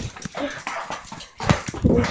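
A dog play-fighting with a person: scuffling and dog noises, with a sharp thump about one and a half seconds in.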